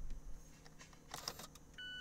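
Faint click of a car's START/STOP push button, then a short electronic beep from the dashboard near the end as the ignition switches on without the engine starting.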